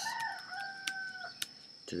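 A drawn-out pitched animal call in the background, lasting about a second and a half, with a few sharp clicks.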